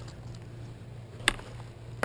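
A single short click about halfway through, over a faint steady low hum.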